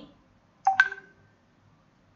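A short electronic beep of two quick tones, one right after the other, well under a second long, coming about two-thirds of a second in.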